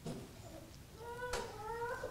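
A faint, high-pitched, drawn-out vocal sound with a slight upward glide, starting about halfway through, with a single soft click partway through it.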